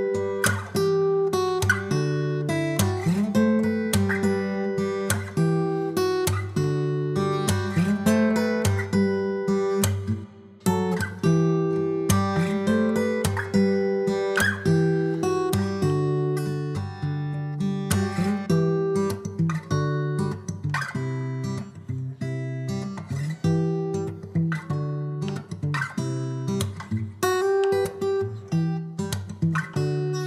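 Background music played on acoustic guitar, plucked and strummed at a steady pace, with a brief pause about ten seconds in.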